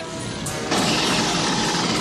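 Film battle sound effects with score: a few held musical tones give way, under a second in, to a dense, steady wash of flames and weapons fire.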